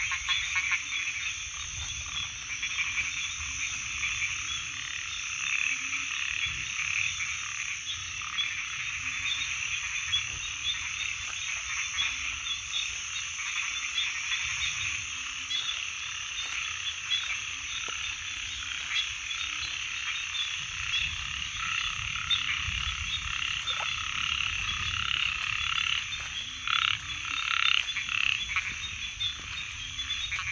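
Dense, continuous chorus of many frogs calling at night, with a deeper call repeating about once a second beneath it. A few louder, closer calls stand out near the end.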